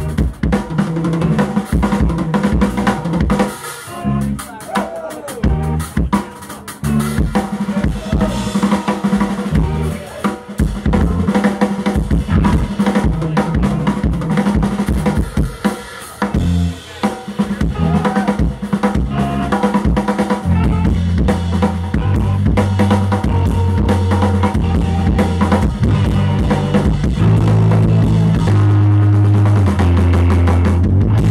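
Live rock band, electric guitar, bass and drum kit, playing loud, with busy snare, bass drum and rim hits. About twenty seconds in the guitars settle into long held low chords and the music grows steadier and louder.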